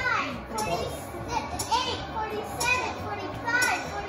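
Several children's voices shouting and squealing excitedly over one another, with high calls that swoop up and down every second or so.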